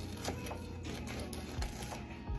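Kitchen knife sawing through a crusty toasted sandwich, giving a series of faint, irregular scratchy crunches.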